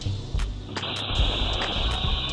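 A glass door shattering, a burst of crashing noise starting just under a second in and trailing off as a high hiss, over background music with a steady beat.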